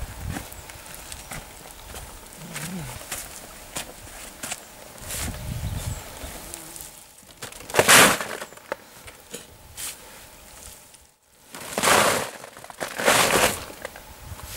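Pitchfork working dry, half-composted grass, with scattered crackling and rustling. In the second half come three louder, short rustling swishes, about 8, 12 and 13 seconds in, as forkfuls are dropped into a woven polypropylene big bag.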